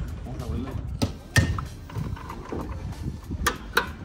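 A car's hood being unlatched and raised by hand: a sharp metallic click about a second and a half in, then two more clicks near the end as the hood is lifted.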